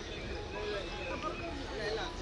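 Faint voices of people talking in the background, over a low steady rumble.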